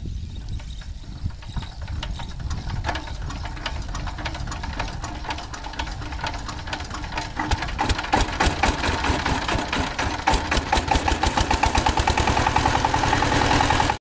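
A 16 hp single-cylinder diesel engine on a two-wheel power tiller being hand-cranked to start. Irregular knocks at first, then about eight seconds in it gets louder and settles into a quick, even chugging as it runs.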